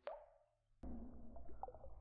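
Water drops plopping into a cave pool: one drop right at the start, then after a near-silent gap a scatter of faint drips about a second in, over a low steady hum.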